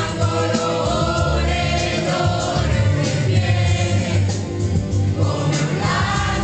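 Karaoke: several voices singing together into microphones over a loud amplified backing track.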